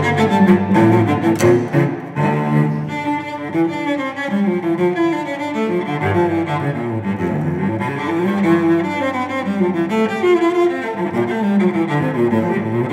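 Solo cello bowed in a melodic passage, note following note, a little softer after about two seconds.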